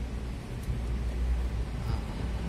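Steady low rumble and hiss inside a car's cabin, with a couple of faint clicks as the climate-control buttons are pressed.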